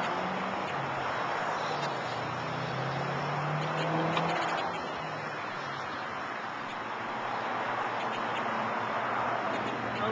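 Road traffic: a steady rush of passing vehicles that swells and fades, with a low engine hum through the first half.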